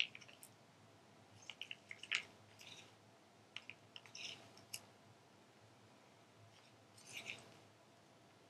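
Faint, scattered clicks and scrapes of a plastic stir stick working around the inside of a small plastic cup, scraping out thick acrylic pouring paint.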